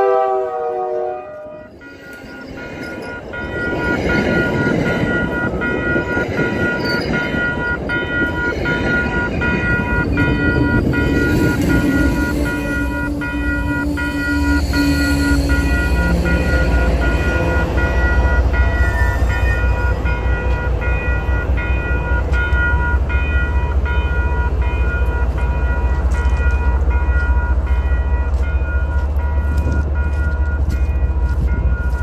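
A train horn sounds and stops about a second in. Then a commuter train passes close by: wheels rumble on the rails, and a grade-crossing bell rings steadily. In the second half the diesel locomotive at the rear goes past with a deep, rhythmic engine throb.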